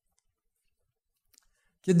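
Near silence broken by two faint clicks, then a man's voice begins speaking near the end.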